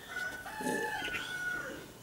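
A rooster crowing once: a single drawn-out crow lasting about a second and a half.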